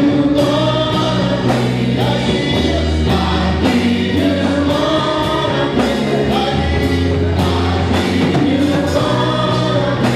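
Gospel choir singing with a band, over sustained bass notes and a steady drum beat.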